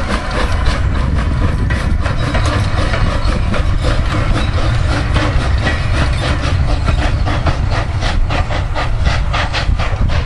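Replica of Stephenson's Rocket steam locomotive working along the track with passengers in tow. Its exhaust chuffs come as a fast, even beat over a steady low rumble, and the beats come closer together near the end.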